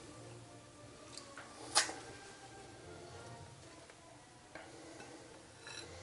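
Quiet handling of a burger on a plate as the top bun is set on and pressed down, with one sharp click a little under two seconds in and a few fainter taps.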